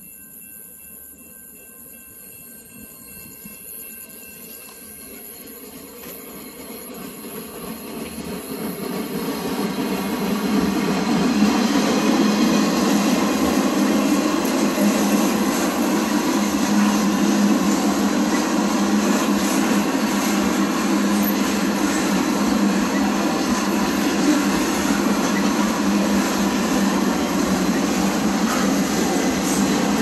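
CSX freight train coming through a grade crossing: it grows louder over about ten seconds as it approaches, then the freight cars roll past steadily with continuous wheel-on-rail noise.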